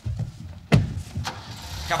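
A car engine starting up and running, a steady low rumble, with a sharp knock about three quarters of a second in.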